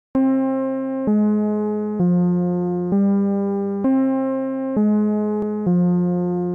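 Synthesised electric-piano-like notes from a music-sequencer app: a new sustained note or chord struck about once a second, seven in all, each fading a little before the next, the pitch stepping between a higher and a lower note.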